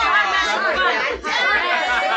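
Several people talking at once: excited overlapping chatter of a small group gathered close together.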